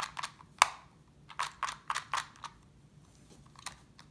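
Rubik's Clock puzzle clicking as its wheels are turned and pins pushed by hand: a few sharp clicks in the first second, a quick run of clicks around the middle, then a couple of faint ones.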